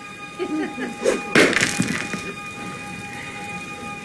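Brief indistinct vocal sounds, with a short noisy burst about a second and a half in, over faint steady background tones.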